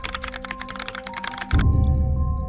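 Rapid computer-keyboard typing sound effect, a quick run of clicks, laid over background music. The typing stops about one and a half seconds in, and the music's deep bass comes back in.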